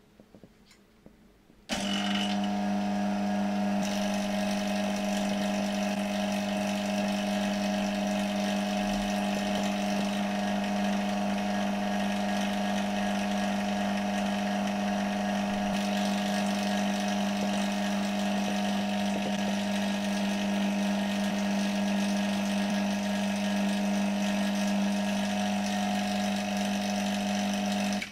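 Small electric rotary-vane vacuum pump switched on about two seconds in and running with a loud, steady hum until it is cut off suddenly at the end. It is evacuating the reactor vessel, pulling out remaining air and any particles shed from the heated nickel mesh.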